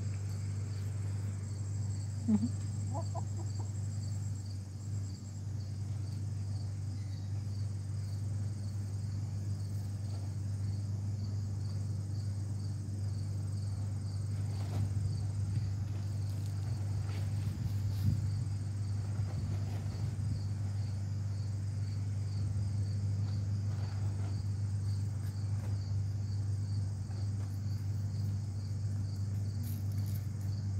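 Insects chirring steadily with a fast, even pulse high in pitch, over a steady low hum. A chicken gives one short call about two seconds in.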